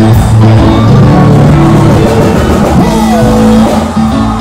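Reggae band playing loud live music with drums, bass and electric guitar; a note slides down in pitch about three seconds in.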